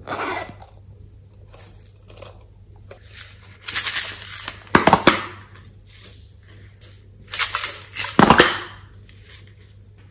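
Small plastic containers handled and their contents scraped and tipped into a glass tray of slime: three bursts of rustling, scraping noise, a short one at the start and longer, louder ones about four seconds in and about eight seconds in.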